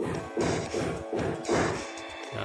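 Banging from building work inside a swiftlet house, a run of sharp knocks about every half second over a steady low hum.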